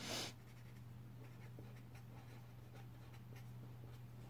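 Pen writing on paper: a short, louder scribble right at the start as a letter is blotted out, then a run of faint, short pen strokes as a word is written.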